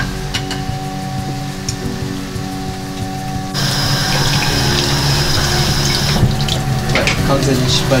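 Background music with a steady beat. About three and a half seconds in, a louder, steady sizzle of egg frying in a rectangular tamagoyaki pan over a gas flame joins it, with a few clicks of chopsticks against the pan.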